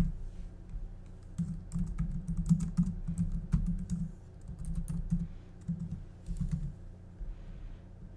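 Typing on a computer keyboard, rapid key clicks in several short runs with brief pauses between them.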